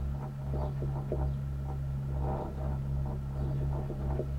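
Steady low hum of a gondola cable-car cabin running along its cable, heard from inside the cabin, with a faint pulsing undertone and faint scattered ticks.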